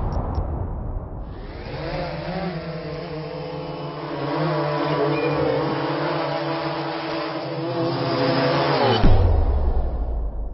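Sound effects for an animated logo intro: a steady buzzing hum of several tones over hiss, swelling in the middle. It ends about nine seconds in with a deep boom that trails off into a low rumble.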